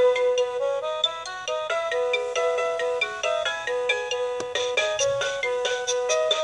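Toy music player boom box playing a simple electronic melody through its small speaker, a run of clean beeping notes. Light percussive ticks sound over the tune and grow stronger about four and a half seconds in.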